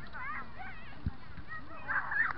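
Children's voices calling and shouting across an open field during a soccer game, high and distant, with a single low thump about a second in.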